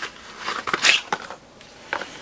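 Cardboard box and packaging handled as a power adapter is taken out: short scraping and crinkling noises with a few sharp clicks, loudest a little under a second in.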